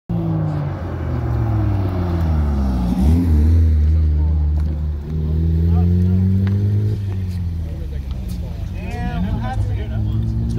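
A car engine running loud and close, its pitch slowly climbing and falling a few times, with a sudden drop about seven seconds in; voices come in near the end.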